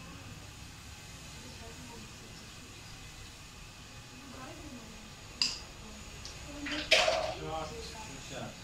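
A carrom shot on a wooden carrom board: a sharp click about five and a half seconds in, then a louder clack about a second and a half later as the pieces strike.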